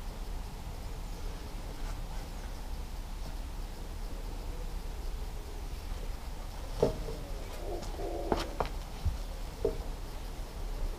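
A few short knocks and rubbing sounds from a car tyre planter being pressed down onto its metal poles, over a steady low background hiss; the knocks come in the last few seconds.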